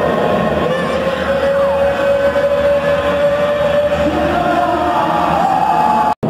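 Ring announcer's voice over the arena loudspeakers, drawing out one long held note for about four seconds over crowd noise in the hall.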